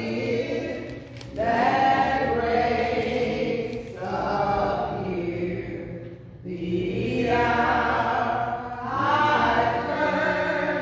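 A small group of women singing a hymn together, in long held phrases with short breath pauses about a second in and again past the middle.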